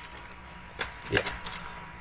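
A handful of sharp, irregularly spaced clicks from a computer keyboard and mouse, as keys and buttons are pressed.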